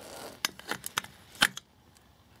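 Small clicks and taps as a Raspberry Pi circuit board is handled and set down into a cast aluminium case, a handful of light clicks with the sharpest about one and a half seconds in.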